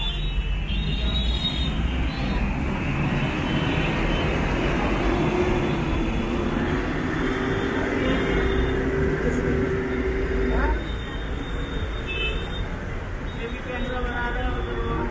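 Road traffic rumbling at a bus stop, with a steady vehicle engine hum that starts about five seconds in and cuts off abruptly near eleven seconds.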